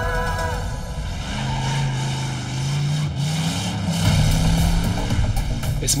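Motorcycle engine running under acceleration, its pitch climbing in steps through the gears.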